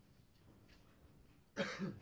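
A person coughing twice in quick succession, a short, sudden burst near the end.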